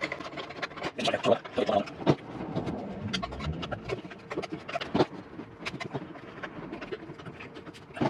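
A rubber inner tube and hose being pushed and worked into a steel motorcycle fuel tank through its filler opening, giving rubbing and a scattered series of knocks and clicks. The sharpest knock comes about five seconds in.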